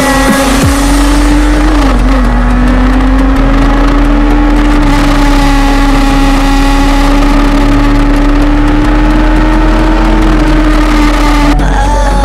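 A sport motorcycle's inline-four engine held at steady high revs while riding, its note creeping slightly higher, over wind and road noise. The engine sound breaks off and changes abruptly just before the end.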